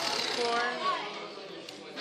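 Young voices talking over classroom background noise.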